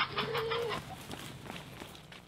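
A chicken calling, loudest at the very start, with a short held note that ends before the first second is out, followed by faint scattered sounds.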